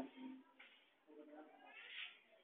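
Faint meowing: short cat-like calls, the last one drawn out and rising in pitch near the end, with a short laugh at the start.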